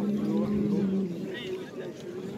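Several people talking, over a steady low hum that stops about a second in.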